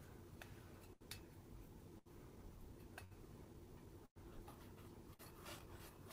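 Near silence: faint room tone with a few faint small ticks.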